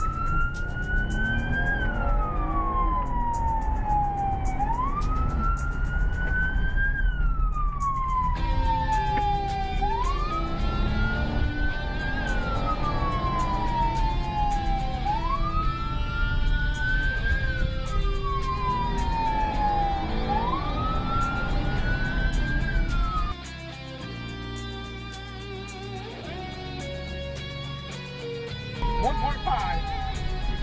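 Police car siren in wail mode, heard from inside the cabin over the car's engine and road noise. Each cycle rises quickly and falls slowly, about every five seconds, until the siren cuts off about 23 seconds in. Music plays along with it from about eight seconds in.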